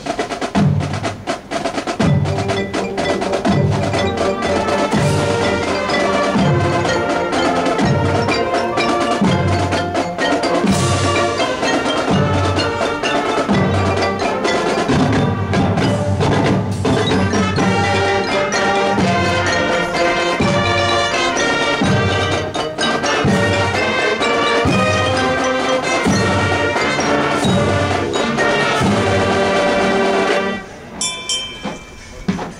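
A high school marching band plays its field show: brass and percussion over a steady low beat that falls about every three quarters of a second.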